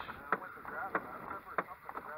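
Fish-attracting hull thumper knocking on the boat hull with its mallet in a steady, even beat, about one knock every two-thirds of a second.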